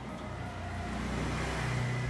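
A low, steady motor hum that slowly grows louder.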